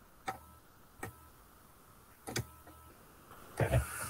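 Three faint, short clicks about a second apart, then a louder short low thump near the end, over a quiet room.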